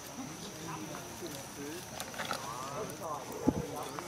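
Indistinct background voices in short, scattered phrases, with a single dull thump about three and a half seconds in.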